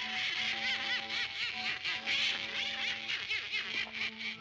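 Donald Duck's raspy, quacking cartoon laugh: a long, fast run of cackles, about five a second, over the orchestral score.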